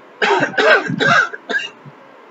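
A man coughing, four coughs in quick succession about a quarter second to a second and a half in, the third the longest.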